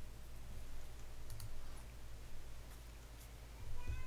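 A few faint computer mouse clicks over a low steady hum, as a screen-share option is being clicked.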